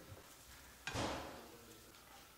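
A single clunk of kitchenware about a second in, ringing out and fading over about half a second against quiet kitchen room tone.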